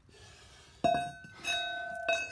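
A removed steel brake drum struck twice, about a second in and again half a second later, each knock ringing on with a bell-like metallic tone.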